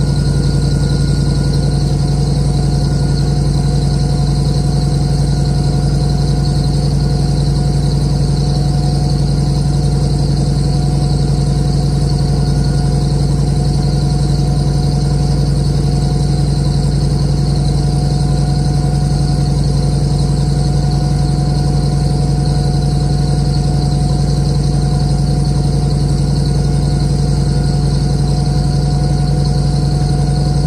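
Rolls-Royce B81 straight-eight petrol engine of an FV432 Mk1 armoured personnel carrier running at a steady, even speed while warming up after a cold start. It is heard from inside the hull, with a steady high whine over the low engine note.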